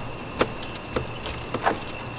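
A bunch of keys jangling as a door is unlocked, with three sharp clicks of the key working in the lock.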